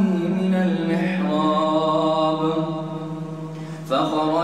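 A male imam's voice reciting the Quran in melodic tajweed chant, drawing out one long phrase. Near the end he breaks off briefly and starts the next phrase.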